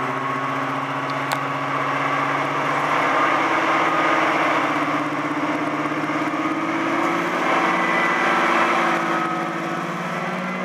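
Class 55 Deltic diesel locomotive's twin Napier Deltic two-stroke engines running as it pulls away, the engine note rising a little and growing slightly louder about three seconds in.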